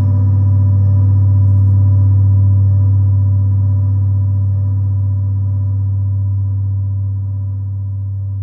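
Experimental electronic music: a steady low electronic drone with faint higher overtones held throughout, slowly fading in loudness.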